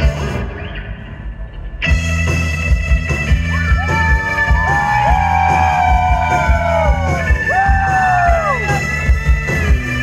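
Rock band playing live through a loud PA: the music drops to a quieter, muffled stretch for about the first two seconds, then the full band comes back in with heavy bass and drums, and high notes slide and bend over the top.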